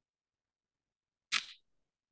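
Silence, broken a little over a second in by one short, sharp click-like noise lasting about a third of a second.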